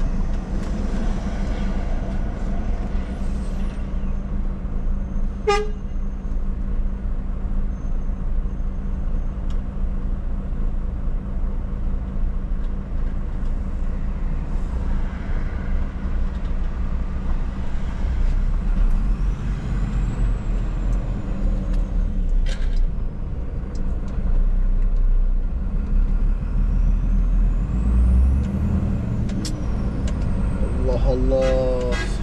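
Truck's diesel engine running steadily, heard from inside the cab, growing louder and deeper in the last several seconds as the truck moves off. Two sharp clicks, a few seconds in and past the middle.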